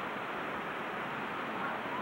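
Steady rush of water from a rocky stream and waterfall, with faint voices in the background.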